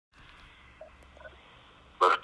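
Faint steady hiss of a recorded telephone line, with a few soft blips about a second in.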